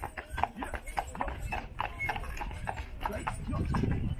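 Horse hooves clip-clopping at a walk on an asphalt road, an irregular run of hoof strikes from a pair of draught horses pulling a covered wagon.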